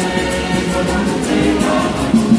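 Church choir singing together, many voices at once, with a quick, even beat of about five strokes a second underneath.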